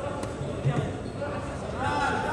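A few dull thuds from two fighters grappling on the mat in an MMA ground fight, under voices calling out in a large hall; a louder shout rises near the end.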